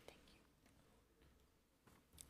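Near silence: faint room tone, with a faint click just after the start.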